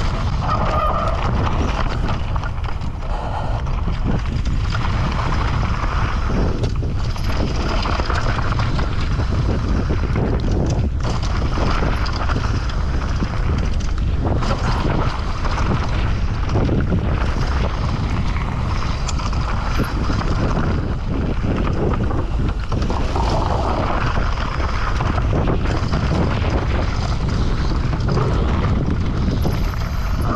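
Wind buffeting an action camera's microphone as a downhill mountain bike rides fast down a rocky dirt trail. Frequent knocks and rattles from the bike and tyres come through as it hits rocks and bumps.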